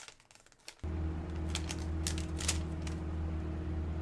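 Sharp clicks and rustling from a wallet, card and paper receipt being handled close to the microphone, over a steady low hum that sets in about a second in.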